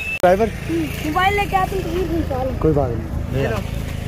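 Voices talking over the low, steady hum of a car engine running close by; the hum cuts off at the end.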